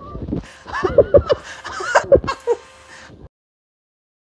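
A man yelping and laughing in short bursts after his finger touches a spinning cooling fan, over the fan's faint steady hum. All sound cuts off abruptly about three seconds in.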